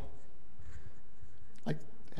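Faint rustle of paper at a lectern in a pause over steady low room noise, with a man starting to speak near the end.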